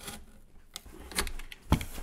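Utility knife blade cutting through corrugated cardboard in short scratchy strokes, with a single sharp thump near the end.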